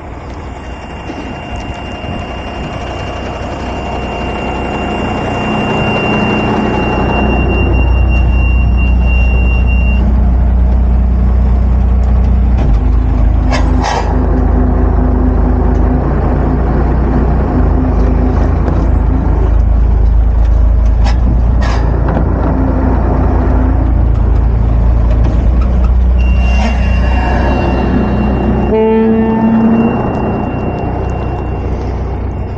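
An M939A2 five-ton military truck's turbo-diesel engine pulling under load. It builds up over the first several seconds, then holds loud and steady. A steady high whine is there at the start and comes back near the end, a few brief knocks sound around the middle, and a rising tone comes just before the end.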